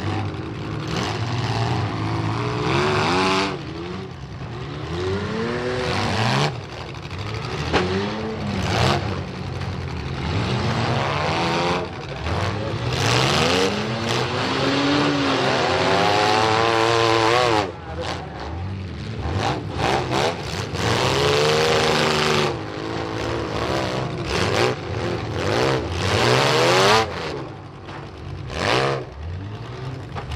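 Several demolition derby cars' engines revving hard, their pitch rising and falling again and again as they accelerate and back off, with sharp bangs of cars crashing into each other scattered through.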